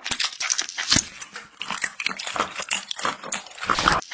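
Eating sounds of biting into and chewing octopus: a quick, irregular run of short clicks and snaps.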